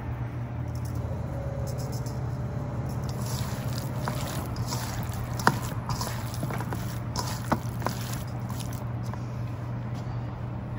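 Bare hands squishing and turning raw, seasoned chunks of pork and chicken in a stainless steel mixing bowl: soft wet squelching with a few sharp clicks, over a steady low hum.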